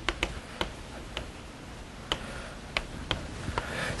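Chalk tapping and clicking against a blackboard while writing, a series of about seven sharp, irregularly spaced ticks.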